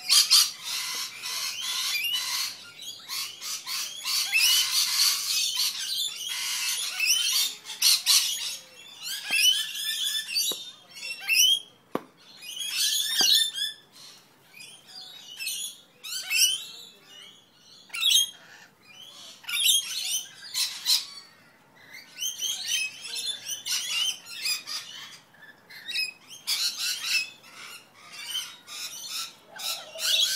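A group of rainbow lorikeets screeching and chattering in rapid, high-pitched bursts, densest in the first several seconds, with short quieter gaps between flurries.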